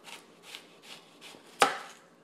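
Kitchen knife slicing through a whole onion on a plastic cutting board: a few faint cuts about every half second, then one louder knock as the blade meets the board near the end.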